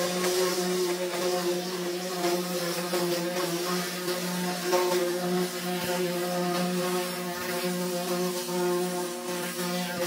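Pressure washer running, a steady buzzing drone over the hiss of the water jet as the lance blasts paint residue off bare car-body metal.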